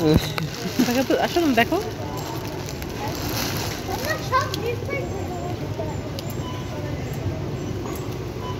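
Indistinct children's voices and chatter, loudest in the first two seconds, over the steady background noise of a busy warehouse store.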